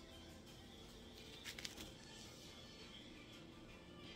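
Faint background music, with a short cluster of soft clicks about one and a half seconds in from a gloved hand working ground-beef mixture in a steel bowl.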